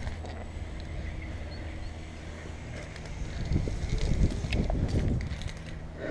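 Rope and climbing gear rubbing and shifting against a helmet-mounted camera during a descent on a single rope, with a few faint clicks of hardware. There is a louder stretch of rubbing and buffeting from about three and a half seconds in.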